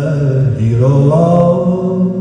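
Live folk music from a lap-played slide guitar and voice: a steady low drone, with a long note that glides upward about half a second in and is then held.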